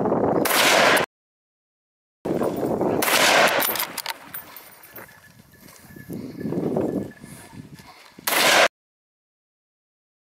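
Shotgun shots at wild boar: a loud blast about half a second in, another around three seconds, and a last one a little after eight seconds. Between them are sudden cuts to dead silence.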